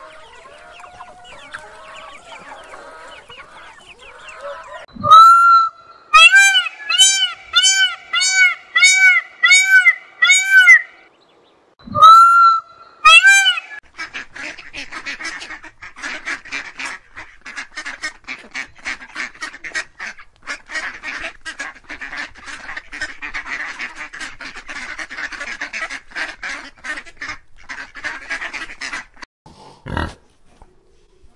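Faint calls of young parrot chicks, then a bird giving loud honking calls, about ten at roughly two a second with one short break. Then comes a steady, busy chorus of goslings peeping.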